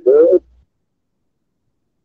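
A man's short voiced sound, like a hum or hoot with a gliding pitch, in the first half second, then silence.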